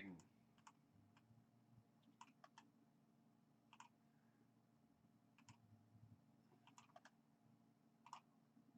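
Near silence: a faint steady hum with about a dozen faint, scattered computer mouse clicks.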